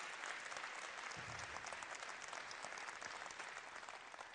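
Audience applauding: a steady patter of many hands clapping, fairly faint, thinning out near the end.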